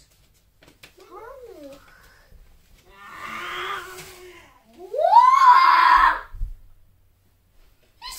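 A child's wordless vocal sounds: a short gliding call, then a rough drawn-out groan, then a loud squeal that rises in pitch and holds for about a second.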